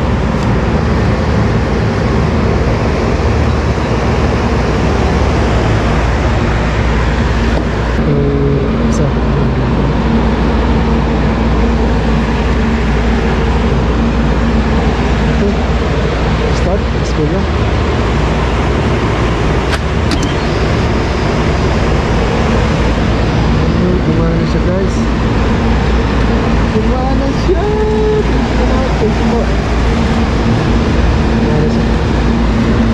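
Carrier package air-conditioning unit running: a loud, steady whoosh of its fans with a low steady hum underneath.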